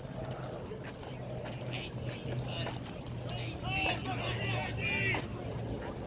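Distant voices shouting on a football field, several short high calls in the middle and near the end, over a steady low hum.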